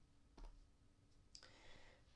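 Near silence with a single soft click about half a second in and a faint hiss near the end.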